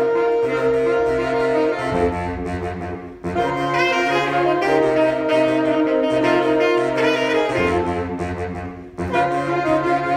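A saxophone ensemble, a bass saxophone among them, playing held chords, with short breaks between phrases about three seconds in and again about nine seconds in.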